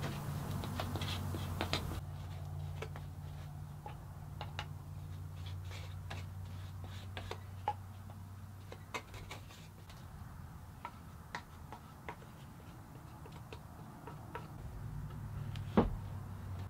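Wooden stir stick mixing epoxy in a metal can: scattered faint clicks and taps of the stick against the can, over a low steady hum. A sharper knock comes near the end.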